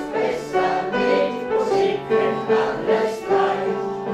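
An amateur choir of elderly voices singing a song together, accompanied by an upright piano.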